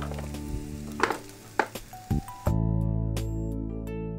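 Paneer and banana pieces sizzling as they fry in a pan, with a few clicks of a wooden spatula stirring against the pan, under faint background music. About two and a half seconds in, the sizzling stops and louder music takes over.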